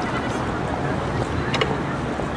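Outdoor crowd ambience with wind buffeting the microphone: a steady low rumble, a murmur of voices, and a short sharp sound about one and a half seconds in.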